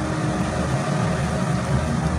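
A steady low rumble with an even hiss above it.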